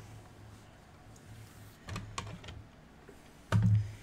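Hard plastic PSA graded-card slabs clicking against each other as a stack is handled, with a few light clicks around the middle and a louder knock near the end as a slab is set down.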